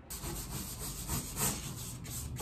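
Stiff paintbrush scrubbing on cardboard: a rapid run of scratchy strokes, about four a second, that starts suddenly.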